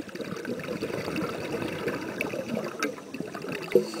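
A scuba diver's exhaled breath bubbling out of the regulator underwater: a long gurgling rush of bubbles, with one louder burst near the end.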